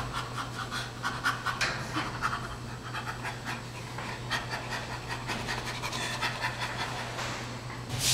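Chimpanzee play laughter during a tug-of-war game: a long run of quick, breathy pants, several a second.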